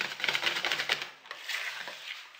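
Wire whisk beating thick almond-cream batter in a plastic bowl: rapid strokes clicking and scraping against the bowl, with a brief pause about a second in.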